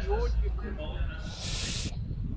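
A short hiss about one and a half seconds in, lasting about half a second and cutting off sharply, over a low rumble of wind on the microphone and nearby voices.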